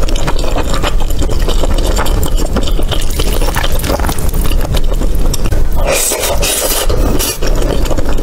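Close-miked wet chewing of saucy rice, with many small sticky mouth clicks over a steady low rumble, while a wooden spoon scrapes and scoops through the rice in a ceramic bowl. A louder, noisier stretch comes about six seconds in.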